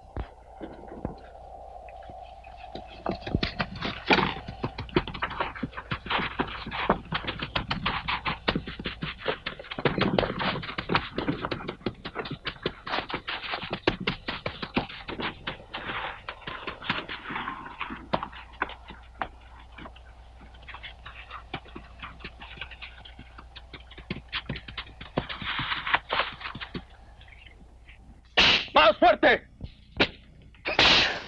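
A whip lashing a man in a flogging: a quick, irregular run of sharp cracks, several a second, with a loud burst near the end.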